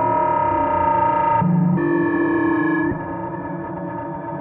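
Synthesizer drone jam with held, distorted synth tones that change note: a bright held note, a short low tone about a second and a half in, then another held note that stops near three seconds, leaving a quieter hum.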